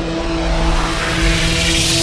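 Logo sting sound design: a hissing whoosh that swells steadily louder and brighter over a held musical drone.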